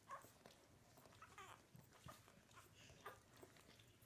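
Faint, brief squeaks from newborn Labrador puppies while they nurse, a few times.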